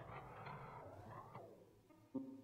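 Near silence: faint room noise with a soft, even hiss-like rustle for about the first second and a half, which then fades out.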